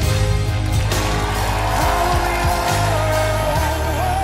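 A male singer holds one long high note from about a second in, over piano and band accompaniment in a pop ballad.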